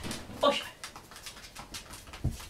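Miniature pinscher's claws clicking and scrabbling on a concrete floor as it moves about, with a brief vocal sound about half a second in.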